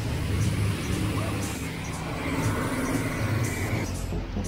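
Road traffic on a wet city street: a steady hiss of tyres on the wet road over a low vehicle rumble, with a faint high whine in the second half.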